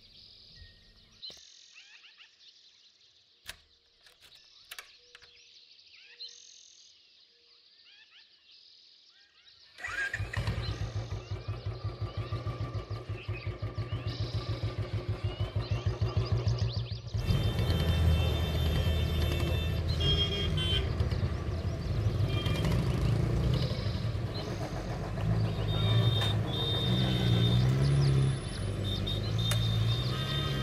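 Faint bird chirps and a few small clicks, then about a third of the way in a motorcycle engine starts suddenly and runs with a quick, even beat. About halfway through the sound changes to a fuller street mix: the engine running among traffic noise.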